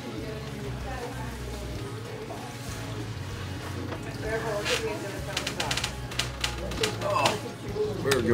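Faint voices over a steady low room hum, then from about halfway a run of sharp, irregular hand claps.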